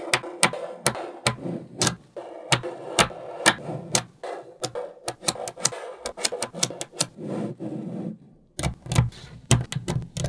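Small magnetic balls clicking as they snap together and are pressed into place by hand, in sharp irregular clicks several times a second. Near the end come a few heavier knocks as the joined sheet of balls is handled and bent.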